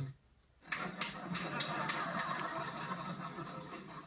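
TV sound cuts out for about half a second at a channel change, then the new channel's sitcom crowd scene comes in as a steady crowd noise from the TV speaker.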